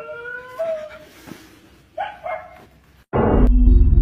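A long wavering canine howl that fades out just under a second in, followed about two seconds in by two short yelps. Near the end a loud sudden burst of noise cuts in, followed by a loud low rumble with steady tones.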